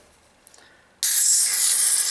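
Ring-pull of a nitro porter can opening about a second in, releasing a sudden loud hiss of pressurised gas that holds steady.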